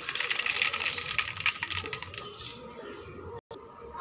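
Hot oil sizzling and spattering in a metal kadai: a dense crackle, strongest in the first two seconds, then dying down.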